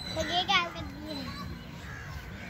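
Children's voices, with one child's high voice calling out loudly about half a second in.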